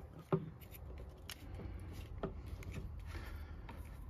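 A few quiet metallic clicks and rubbing as a coax cable's F-connector is twisted by hand onto the threaded F port of a Klein Tools Coax Explorer 2 tester.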